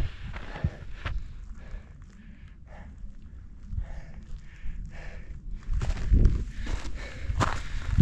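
Hiker's footsteps on a rocky trail, irregular light strikes over a low rumble that swells about six seconds in.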